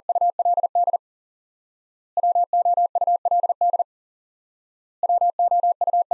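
Morse code sent as a steady single-pitch tone at 40 words per minute: the word "would" keyed three times, each run of dits and dahs lasting under two seconds with a pause of about a second between runs. The first run is already under way at the start, and the third is still going at the end.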